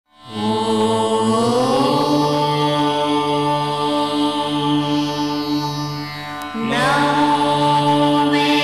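Indian devotional music: long held notes over a steady drone, sliding upward in pitch early on, with a fresh phrase starting near the end.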